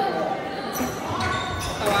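Badminton rally: a few sharp racket hits on the shuttlecock, with people talking in the background.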